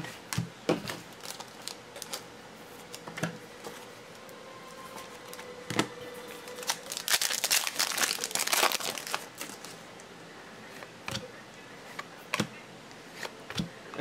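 A foil 2016 Panini Select trading-card pack wrapper crinkling and tearing as it is opened, densest for a couple of seconds just past the middle. Scattered light clicks and taps come from cards and plastic card holders being handled.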